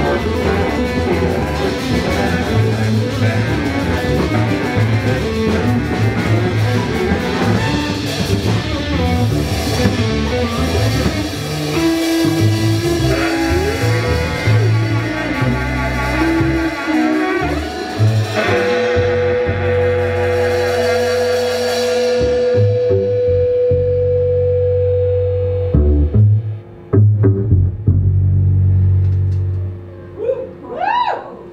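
Live band of electric guitar, upright double bass, drum kit and saxophone playing, with a long held note sounding from a little past halfway. The music breaks off in a few stop-start hits near the end.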